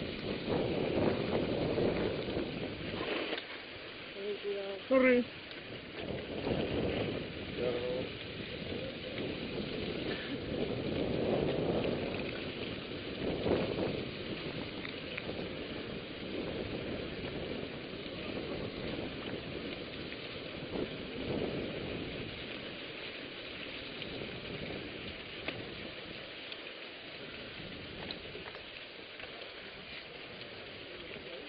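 Mountain bike riding over loose gravel and sand: a steady crackling hiss of tyres on the rough ground, with wind on the microphone. About five seconds in comes a brief, louder, rising high sound.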